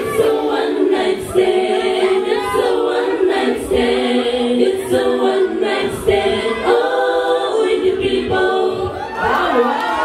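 Group of women singing a Cook Islands song in close harmony, several voices held together in long notes. The bass and drums have dropped away, leaving the voices almost unaccompanied.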